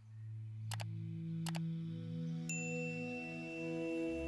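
Ambient background music: sustained low tones fading in from silence, two short clicks within the first two seconds, and a high ringing chime that enters about halfway through and holds.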